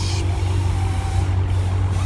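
Dodge Charger Hellcat's supercharged 6.2-litre HEMI V8 idling with a steady low rumble through its muffler-deleted exhaust.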